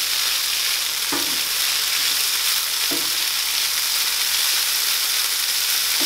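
Tofu scramble sizzling steadily in a frying pan while a wooden spatula stirs and scrapes through it.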